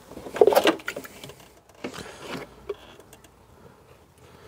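Plastic coolant expansion tank being worked loose and lifted out of a car's engine bay: a scraping rustle about half a second in, then scattered light knocks and clicks of plastic against the bodywork.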